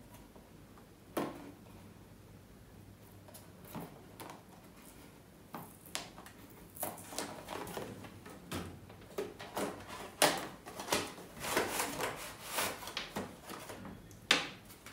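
Cardboard earbud packaging being handled and opened, with its inner box slid out. A few scattered taps come first, then a busier stretch of rubbing, scraping and clicking cardboard in the second half.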